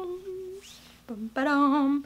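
A woman's voice humming a short wordless tune in long held notes. One note trails off about half a second in, and another wavering note is held from just past a second in.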